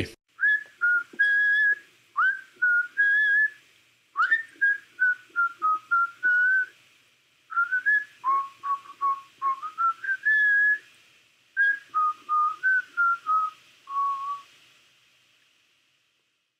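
A whistled melody of clear notes that slide up into each phrase and then step down, in five short phrases with brief pauses between them.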